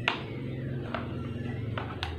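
Electric stand fan's motor running with a steady low hum, turning backwards because its power wire has been joined to the wrong capacitor lead. A few light clicks of the wires being handled.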